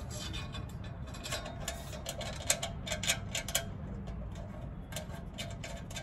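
Irregular small clicks and ticks of metal parts being handled as screws are started finger-tight to fix a stainless steel column bracket to the bench scale frame, over a low steady background rumble.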